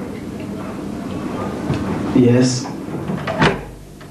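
A wooden door's handle and latch clicking once, sharply, as the door is opened near the end; shortly before it, a brief call from a voice.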